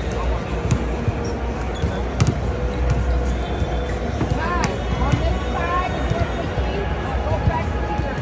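Basketballs bouncing on a hardwood court during pregame shooting warmups: a few scattered sharp thuds over the steady hum and chatter of the arena.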